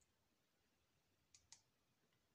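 Two faint, short clicks about a fifth of a second apart, roughly a second and a half in, from buttons being pressed on a satellite receiver's remote control. Otherwise near silence.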